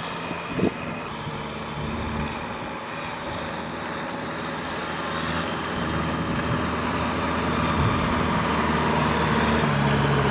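Kubota M6040SU tractor's diesel engine running steadily under load as it works through flooded paddy mud, with the splash and churn of mud and water. It grows gradually louder toward the end.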